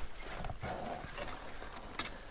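Irregular crunching, rustling and clicking of movement through dry, brittle dune scrub.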